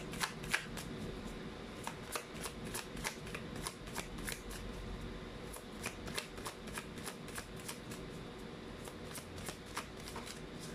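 A tarot deck being shuffled by hand: a quiet run of soft, irregular card clicks, several a second.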